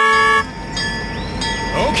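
Dubbed vehicle horn honk: a loud, steady chord-like toot that cuts off suddenly about half a second in. Fainter high tones with a brief pitch swoop follow.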